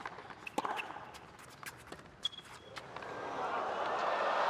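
Tennis rally on a hard court: sharp knocks of the ball being struck and bouncing, with a couple of short shoe squeaks, then crowd noise swelling over the last second or so as a player sprints in for a drop shot.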